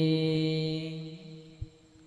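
A man's voice holding one long chanted note at the end of a line of Arabic salawat. The note is steady and fades out about a second and a half in, followed by a faint tap.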